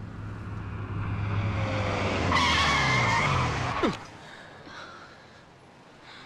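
Car engine approaching and growing louder, then tyres squealing for about a second and a half as the car brakes hard to a stop; the squeal cuts off suddenly about four seconds in.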